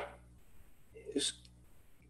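A pause in a man's talk: the tail of his "um" right at the start, then low room tone with one brief, faint breath-like mouth sound about a second in.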